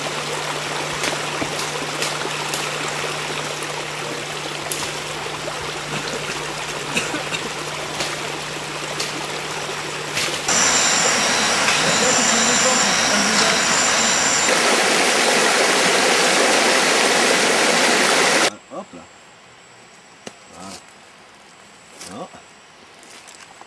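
Steady rush of flowing creek water, loudest from about ten to eighteen seconds in and cutting off suddenly. High broken tones sound over it for a few seconds.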